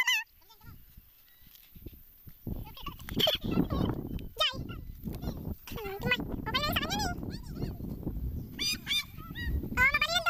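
Wind rumbling on the microphone in an open field, with several high, wavering calls at about three seconds in, again from about six to seven and a half seconds, and near the end.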